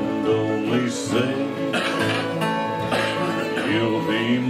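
Acoustic string-band music in a country-bluegrass style: an acoustic guitar strumming chords over low bass notes, with a melody line sliding between notes.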